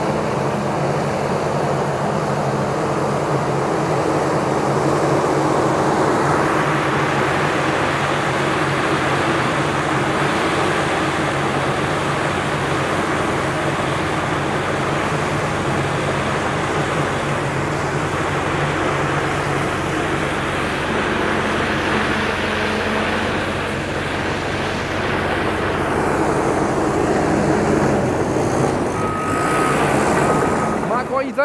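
Caterpillar crawler dozer's diesel engine running steadily under load as it pushes dirt. A broad rush of engine and track noise swells from about six seconds in and eases near the end.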